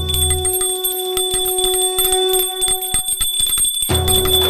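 Small brass puja hand bell rung rapidly and continuously for the aarti, its clapper strikes coming in quick succession over a sustained ringing tone. Low background devotional music cuts out about half a second in and returns near the end.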